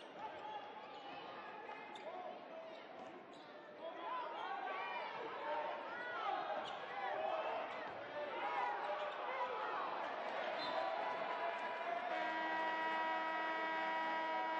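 Basketball game in a gym: the ball bouncing and sneakers squeaking on the hardwood over crowd noise, the squeaks busiest in the middle. Near the end a steady horn sounds for about two to three seconds as play stops.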